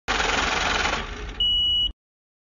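Electronic sound effect: a burst of static hiss that fades after about a second, then a single steady high-pitched beep of about half a second that cuts off abruptly.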